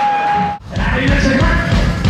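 Heavy metal band playing live, picked up from the stage monitors: a sustained high note cuts off abruptly about half a second in, and after a brief gap the full band comes in loud with drums, bass and distorted guitars.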